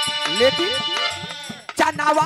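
Live Bhojpuri birha folk accompaniment. Held notes sound under a run of quick rising pitch swoops in the first second. The music thins and drops briefly, then a sharp loud drum stroke brings the full band back in near the end.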